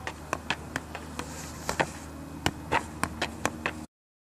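Football being juggled: about a dozen irregular sharp taps of the ball against the feet and legs, over a steady low hum. The sound cuts out suddenly near the end.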